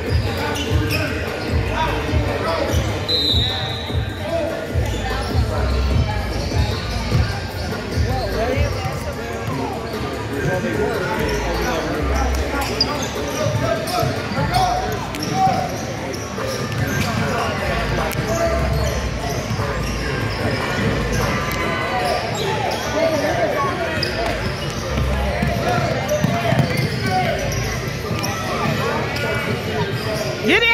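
A basketball bouncing and dribbling on a hardwood gym floor during play, with players' and spectators' voices in an echoing hall. There is a brief high tone about three seconds in.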